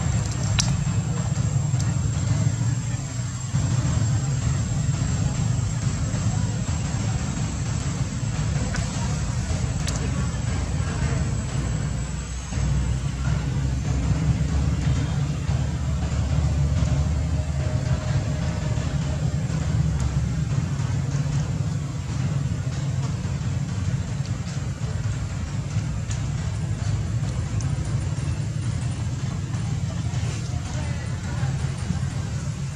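Steady low outdoor rumble with a hiss over it, with a faint high steady whine in roughly the first half.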